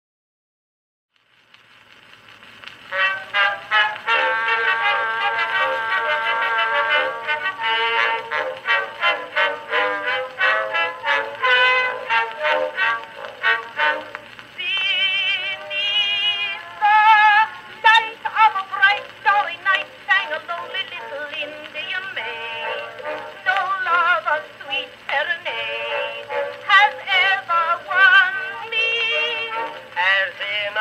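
An Edison Blue Amberol cylinder record playing on a 1915 Edison Amberola 30 phonograph. It plays the instrumental introduction to a 1912 song, fading in about a second and a half in. The sound is thin and narrow-ranged, with almost no deep bass or top end.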